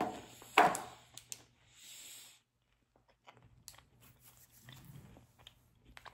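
A person chewing a mouthful of gingerbread, with two louder mouth sounds in the first second, a short breath out about two seconds in, and then fainter chewing.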